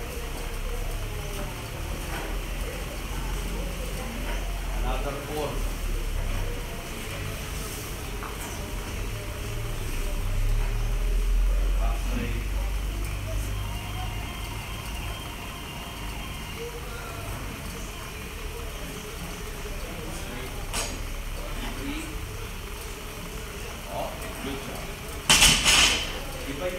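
Gym background of indistinct voices over a steady low rumble, with one short, loud knock about a second before the end.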